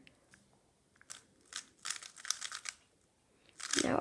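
A MoYu WeiLong GTS3M 3x3 speedcube being turned fast by hand: quick runs of light plastic clicks as the layers snap round, starting about a second in and stopping briefly before the end.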